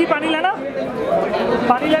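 Chatter of several people talking at once, with one voice standing out briefly near the start.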